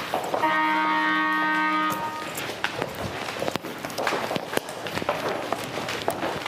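A klaxon sounds one steady, buzzing horn tone for about a second and a half, signalling the start of the task. It is followed by scuffing footsteps and small knocks as a group of people begin dancing in place.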